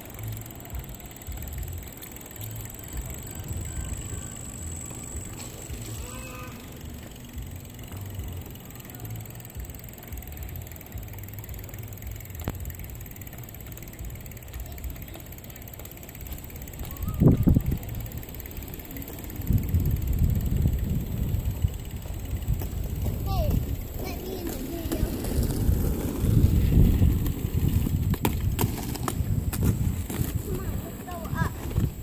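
Low rumble of wind and of small wheels rolling over pavement, heavier and louder in the second half. A single sharp knock comes a little past the middle, and faint children's voices are heard.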